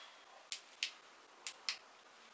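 Four short, sharp clicks in two pairs, the second pair about a second after the first, over a faint quiet background.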